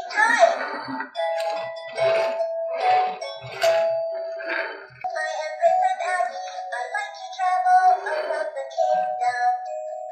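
VTech toy unicorn playing a simple electronic melody of held notes.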